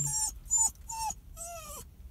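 Small dog whining: four short high-pitched cries, the last one longer and sliding down in pitch. Anxious crying at being left behind while a person he is attached to has gone off without him.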